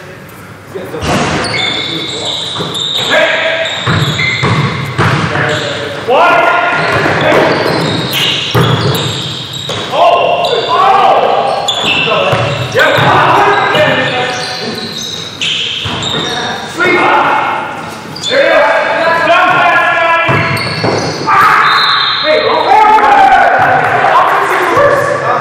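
A basketball bouncing on a gym floor during play, with indistinct shouting and calls from players. The sound echoes around a large gymnasium.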